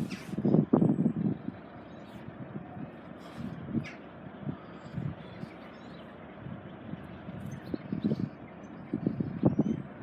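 Footsteps and handheld-camera handling noise over a steady outdoor background hum, with a cluster of dull knocks in the first second and a run of short footfalls near the end.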